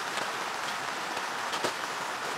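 A steady soft hiss, with a faint tick of something being handled about one and a half seconds in.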